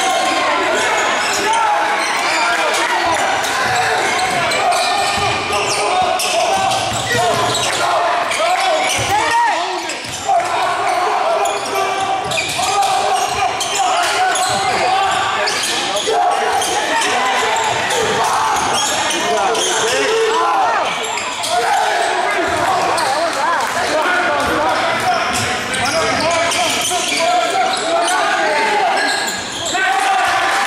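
Live basketball play in a gymnasium: a basketball bouncing repeatedly on the hardwood floor amid the voices of players and spectators, carried by the hall's echo.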